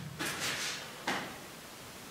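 Two short, soft scraping sounds, the first lasting about half a second just after the start and a shorter one about a second in.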